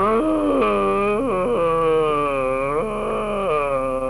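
A man's voice making a long, drawn-out wailing noise, its pitch wobbling and sliding up and down, broken off briefly twice.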